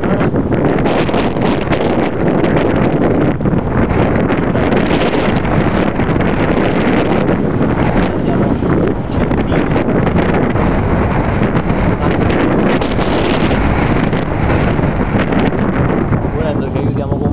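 Strong wind buffeting the microphone: a loud, steady rush of noise, heaviest in the low end.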